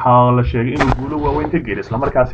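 A man's voice narrating without pause, with one brief sharp click-like sound a little under a second in.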